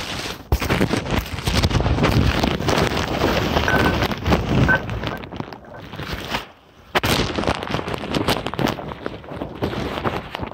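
Loud rustling and crackling handling noise close to the phone's microphone, with a brief lull a little past halfway.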